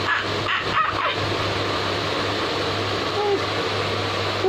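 A man's short, high yelping cries, several in the first second, then a steady hum and hiss with one brief vocal call near the end.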